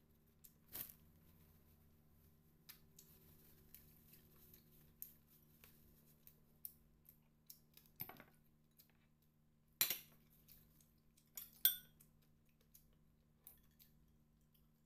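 Tableware handled on a table: a glass bowl moved onto a ceramic plate and a fork picked up, with scattered light taps and clinks and two sharper clinks late on.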